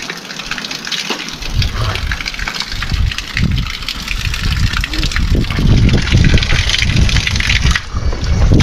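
Water gushing steadily from a stone spout tap and splashing onto the stone basin below, with a low rumbling that grows from about halfway through.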